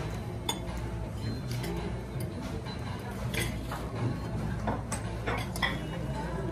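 Restaurant dining-room sound: scattered light clinks of cutlery and dishes, about one every second, over a steady low hum and faint background murmur.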